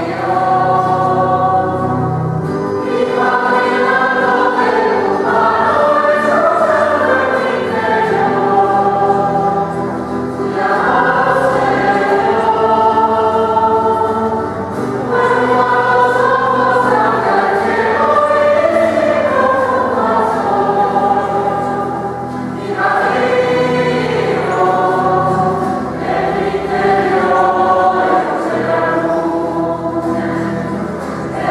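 Choir singing a slow hymn in phrases with short breaks between them, over steady low sustained notes.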